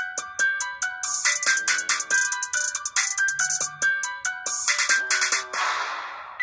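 Instrumental backing music of a song: a melody of short, stepping electronic notes over a beat with regular high ticks, with a noisy swell that fades out near the end.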